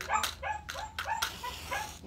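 A dog barking in a quick run of short, high barks, about five a second. Near the end a match is struck and flares with a brief hiss.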